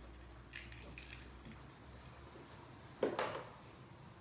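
Cat scuffling with a toy on a carpeted cat tree: a few faint clicks and scuffs in the first second, then a brief louder rustle about three seconds in.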